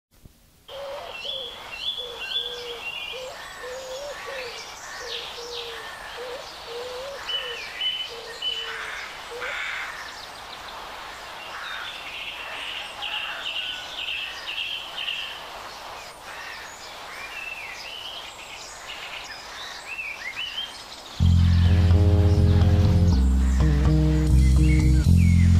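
Birdsong: many short chirps and warbling calls over a faint hiss. Loud band music with deep bass comes in suddenly near the end.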